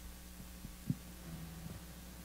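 Quiet pause filled with a steady low electrical hum from the amplified sound system, with a soft thump about a second in.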